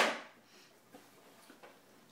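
Cardboard packaging of an Apple keyboard being handled as the keyboard is taken out of its box: a sudden loud rush of noise right at the start that fades within about half a second, then a few faint light clicks.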